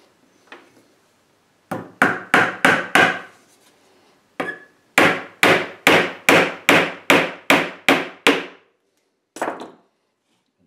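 Hammer driving a brad nail into the corner joint of a wooden frame. There is a lighter first tap, then four quick blows, a short pause, about nine steady blows at a little over two a second, and one last blow near the end.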